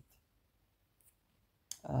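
A pause in a woman's speech: near silence with one faint, short click about halfway through, then her voice resumes near the end.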